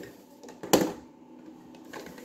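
A single short handling noise about three-quarters of a second in, otherwise quiet room tone.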